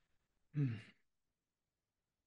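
A man's short sigh, voiced and falling in pitch, about half a second in; otherwise near silence.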